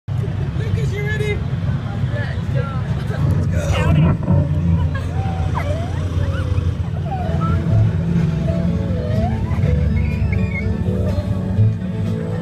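Steady low rumble of the Radiator Springs Racers ride car in motion with wind on the microphone, and riders' voices calling out over it, loudest about four seconds in.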